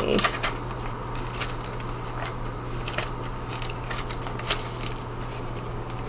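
Paper dollar bills being handled and counted: soft rustles and light crisp flicks of the notes, over a steady low hum.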